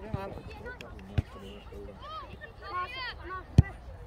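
A football being kicked: a sharp thump about a second in and a louder one near the end, with distant shouting from players and spectators around it.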